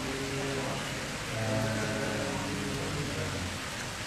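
Steady hiss, with a faint low voice sounding from about a second in until near the end.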